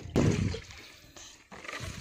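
Liquid fertiliser sloshing in a plastic bucket as it is carried and handled, with a loud thump of handling just after the start and a click about a second and a half in.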